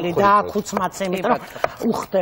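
Eggs being cracked into a glass mixing bowl, with short sharp clicks and taps of shell against the bowl.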